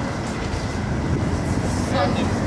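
City tram running past close by on its tracks: a steady low rumble with a faint steady high tone, over general street traffic noise.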